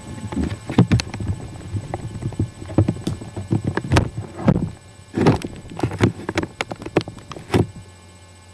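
Handling noise as the camera is moved and set in place: irregular knocks, bumps and rustles, stopping near the end.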